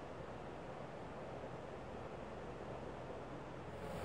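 Faint, steady background hiss, the room tone of the recording; no separate comb strokes stand out.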